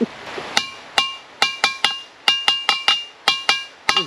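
A hanging metal bell struck about a dozen times in quick, uneven groups, each strike ringing on with several clear metallic tones. It is rung at a gate to call the owners.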